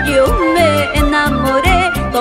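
Live Andean chimaychi band music: a woman sings a high melody with vibrato over bass and a drum kit, with a quick steady cymbal beat of about four strokes a second.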